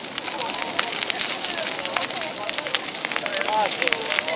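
Bonfire of piled dry branches burning, crackling with frequent sharp pops, with people's voices chattering throughout.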